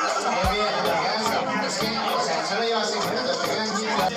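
Many people talking over one another, with background music and its regular faint beat behind the chatter.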